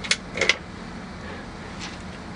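Low steady hum with two brief faint clicks near the start and a fainter one near the end.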